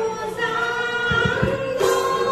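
A mixed group of voices sings a Borgeet in raga Mallar in unison over a sustained harmonium drone. A few deep khol drum strokes come about a second in, and a bright metallic clash comes near the end.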